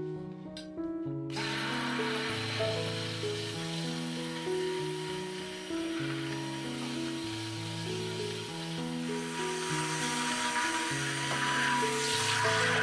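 Cuisinart Smart Stick immersion blender, a 200-watt hand blender, switched on about a second in and running steadily as it blends avocado and milk in a glass jug, with a thin motor whine over the blending noise.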